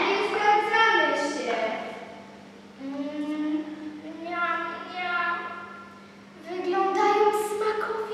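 A child singing solo in a large hall, in drawn-out phrases of held notes with short pauses between them.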